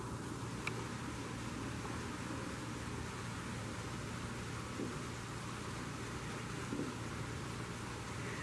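Steady background hum and hiss with no distinct sounds standing out.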